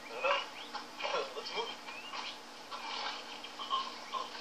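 Film soundtrack playing through a television speaker and picked up in the room: short voice sounds and chirps over a steady low hum.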